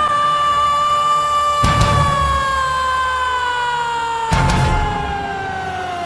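A female lead vocalist in a live symphonic metal performance holds one long, high sung note that slowly sinks in pitch, falling faster near the end. Heavy band hits from drums and guitars come in twice underneath it.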